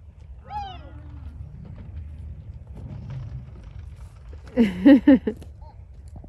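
A child sliding down a long metal slide: a steady low rumble from the ride. There is a short rising-and-falling squeal about half a second in, and a loud, wavering squeal near the end.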